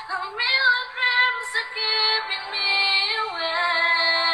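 A woman singing a pop song in English over backing music, holding long notes and stepping down in pitch a little past three seconds in.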